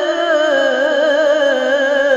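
A male qari's voice reciting the Qur'an in melodic tajweed style, holding one long drawn-out vowel with a wavering vibrato through a microphone.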